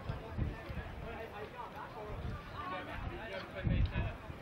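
Indistinct voices of people chatting, with a few short low rumbles on the microphone.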